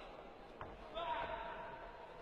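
Taekwondo bout sounds: a single sharp thud about half a second in, then a short held shout about a second in.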